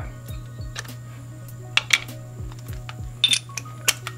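Background music with a steady beat, and a few sharp metal clinks in the second half from a socket and extension working at a stuck spark plug.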